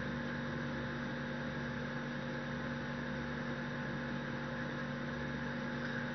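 Steady room background noise: an even electrical hum with a few fixed tones and a soft hiss, unchanging throughout.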